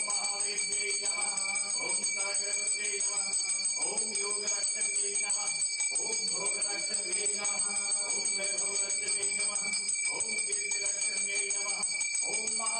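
Temple bells ringing steadily through a Hindu aarti, with voices singing the aarti hymn over them in short phrases.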